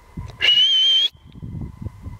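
A single short blast on a dog whistle, a steady high note with a slight waver lasting just over half a second. It is followed by faint low rustling.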